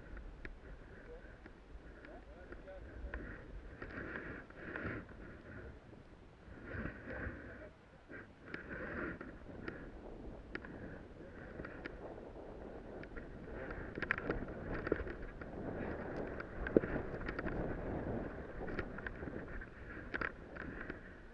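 Wind rushing over an action camera's microphone while riding downhill, with the scraping hiss of sliding over powder snow and scattered small ticks and knocks.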